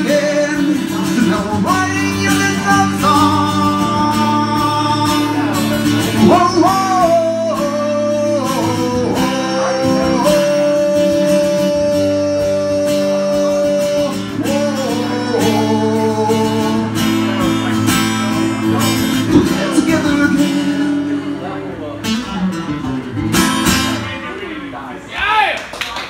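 Larrivée acoustic guitar strummed under a man singing long held notes, the live song winding down in the last few seconds.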